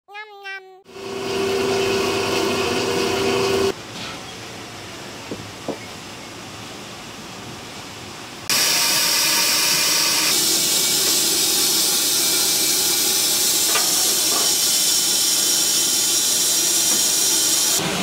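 Steam hissing from stacked aluminium dumpling steamers: a steady, loud hiss that drops and then jumps back up as the shots change. A brief wavering pitched sound comes at the very start.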